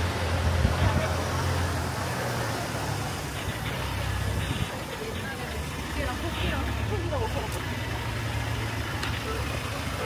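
A minivan's engine running as it creeps slowly along a street, a steady low hum over general traffic noise, with faint voices of passers-by about six to seven seconds in.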